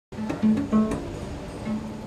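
Cello strings plucked pizzicato: a quick run of about five short notes in the first second, then one more single note near the end.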